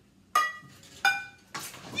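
A ping pong ball bouncing off metal pots and pans: three sharp hits, the first two ringing on briefly.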